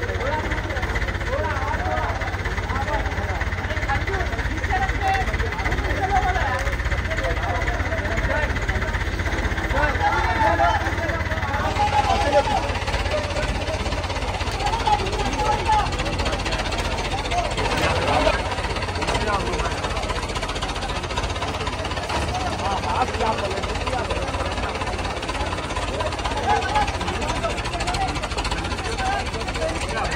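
Steady low diesel engine rumble of a mobile crane running while it holds a suspended load, under the chatter of a crowd.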